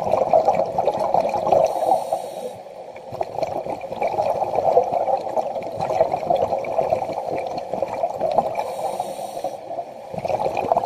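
Muffled underwater water noise with a steady bubbling crackle, and two short hisses, one about two seconds in and one near the end.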